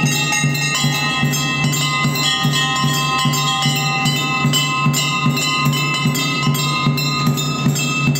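Temple bells ringing continuously during a puja, over a steady rhythmic beat of about three strokes a second.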